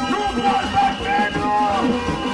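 Haitian rara band music played live: a steady low held tone and higher bending melodic lines over dense percussion, with voices in the mix.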